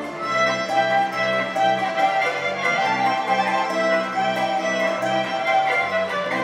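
Traditional folk music led by a fiddle playing a melody of held notes over a continuous accompaniment.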